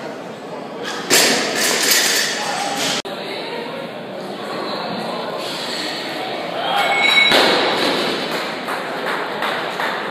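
A loaded barbell with bumper plates dropped onto the gym floor about a second in: a heavy thud with the ring of the bar and plates, followed by voices and shouts from onlookers in a large hall.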